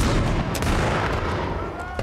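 A shotgun shot, sudden and loud, followed by a long rolling echo that slowly fades over about two seconds.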